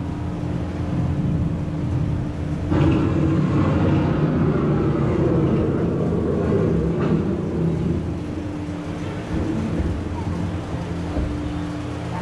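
Theme-park storm sound effects: a continuous low rumble of thunder and wind that swells suddenly about three seconds in, with a faint steady hum underneath.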